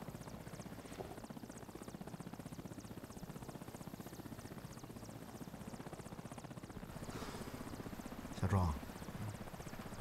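Helicopter cabin noise: the engine and rotor drone steadily with a fast, even flutter, heard from inside the cabin. A brief voice sound comes about eight and a half seconds in.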